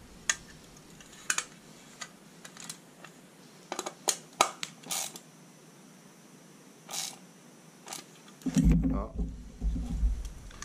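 Scattered light metallic clicks and taps of a small open-end spanner working a nut on a steel mudguard, irregular and a second or so apart, with a duller handling bump near the end.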